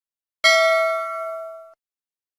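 A single metallic ding: an edited bell-like chime sound effect struck once about half a second in, ringing for just over a second and then cut off abruptly.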